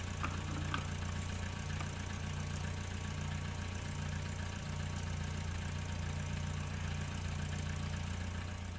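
VW T4 van engine idling steadily: a low, even hum.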